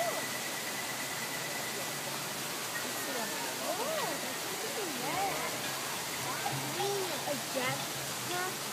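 Faint voices of people talking, over a steady rushing noise like running water. A thin steady high tone fades out about two seconds in.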